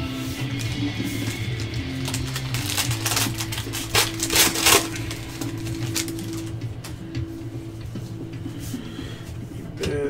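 Background music with steady low notes runs throughout. About three seconds in, a foil card pack is torn open and the cards are handled, a few seconds of sharp crackling rips that are the loudest part.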